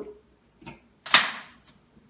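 A hot glue gun being unplugged from the wall socket: a faint click, then a single short, sharp scrape about a second in that fades within half a second.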